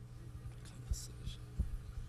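Steady low electrical hum from the microphone and sound system, with a few soft low thumps about a second in and again past one and a half seconds.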